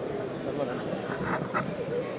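Background chatter of a crowd, many voices talking at once with short fragments of speech.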